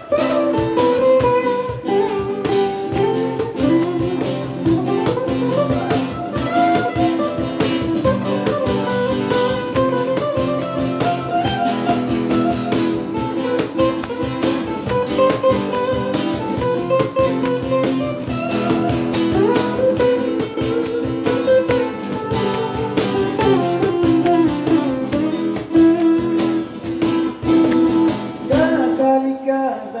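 Live acoustic cover of a song: a cutaway steel-string acoustic guitar strummed and picked, with a voice singing over it. The music briefly drops away just before the end.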